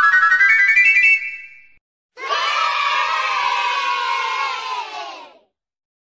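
Intro jingle: a fast run of rising notes that stops about a second and a half in, then, after a brief gap, a held sound of several stacked tones or voices lasting about three seconds and sagging slightly in pitch.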